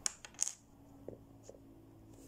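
A few light clicks and taps of small plastic toy figures being handled against a plastic playset, the clearest about half a second in.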